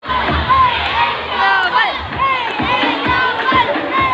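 A crowd of schoolchildren shouting and calling out together, many high voices overlapping in short rising and falling calls.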